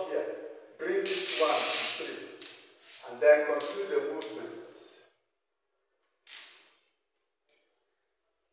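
A man's voice making short wordless vocal sounds and breathy exhalations, with a loud breathy hiss about a second in. The sound cuts off to silence about five seconds in, apart from one brief soft hiss a little after six seconds.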